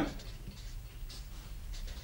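Marker pen writing on a sheet of paper, a series of short, faint strokes.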